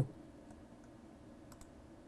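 A few faint computer mouse clicks over quiet room tone: a light one about half a second in, then two in quick succession about one and a half seconds in.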